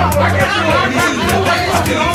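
Music with a steady beat and a held bass under the chatter of a crowd of people talking.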